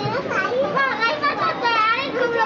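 Several high-pitched young voices chattering and calling out over one another, with no clear words.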